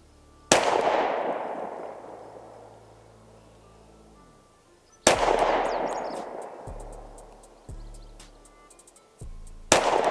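Three pistol shots from a SIG Sauer P365XL, fired slowly about four and a half seconds apart. Each is a sharp crack followed by a long echo that dies away over two to three seconds. They are shots of a deliberate group confirming a red dot sight's zero.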